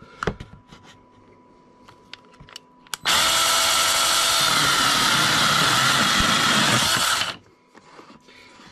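ValueMax 4-inch 20 V cordless mini chainsaw starting up suddenly about three seconds in and cutting through a small piece of wood for about four seconds, then stopping sharply. A few faint clicks come before it.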